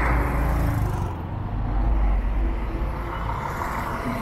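Street traffic noise: vehicle engines running close by, heard as a steady low rumble.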